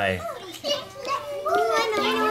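Children talking, their voices continuing through the whole stretch.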